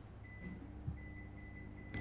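Microwave oven switched back on and running with a faint steady low hum that starts about half a second in, under a faint thin high whine.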